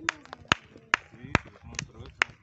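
One person clapping steadily, about five sharp claps a little over two a second, cheering a player on.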